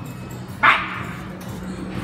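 A dog barking once, a single sharp bark a little over half a second in, with background music underneath.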